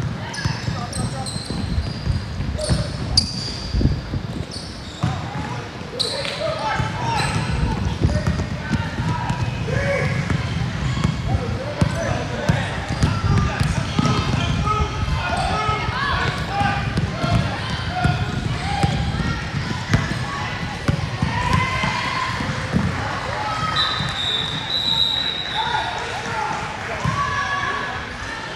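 A basketball bouncing repeatedly on a hardwood gym floor during play, mixed with indistinct shouting and chatter from players and spectators.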